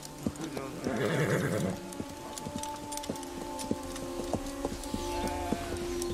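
A horse whinnies about a second in, then horses' hooves clop at an even walking pace, about three beats a second, over steady background music.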